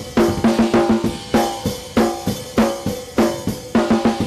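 Recorded snare drum track playing back through a plugin EQ, with one band boosted and the EQ's non-linear setting in distortion mode. The strikes come about three a second, each leaving a ringing tone.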